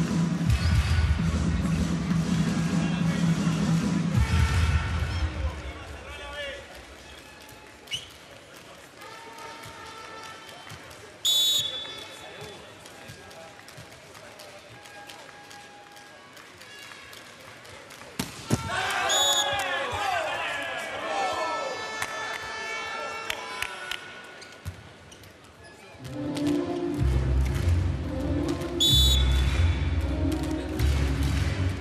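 Volleyball arena sound. Loud arena music with a heavy beat plays at the start and again over the last few seconds, with quieter hall noise and a single sharp thump between. Short referee whistle blasts come about a third of the way in, around two-thirds in and near the end, and a burst of crowd cheering follows the middle whistle.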